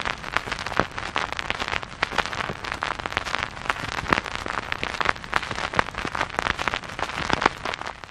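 Crackle sound effect: dense, irregular pops and clicks over a steady hiss.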